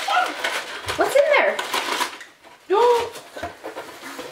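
A young child's short, high-pitched wordless exclamations, one about a second in and another near three seconds, over rustling and handling of a cardboard box and its paper-wrapped contents.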